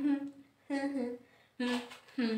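A woman humming a tune in short held phrases, about three of them with brief pauses between.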